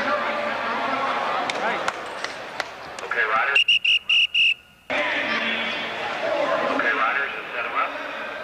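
Indoor crowd chatter, cut about three and a half seconds in by four short, high electronic beeps in quick succession, after which the chatter resumes.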